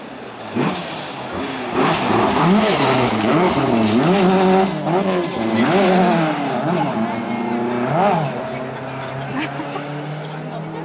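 Race car engine revving hard, its pitch surging up and down about once or twice a second as the throttle is worked through a slide on loose gravel. The surging eases in the last couple of seconds into a steadier note.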